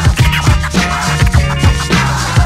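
Hip hop beat playing without vocals, with turntable scratching cut in over the rhythm.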